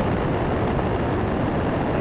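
Space Shuttle launch noise as it climbs on its solid rocket boosters and three main engines: a steady, dense rumble with the weight in the low end, heard through a broadcast microphone.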